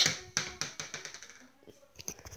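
Small basketball bouncing on a hardwood floor: a run of quick bounces that come closer together and fade out over the first second and a half as the ball settles.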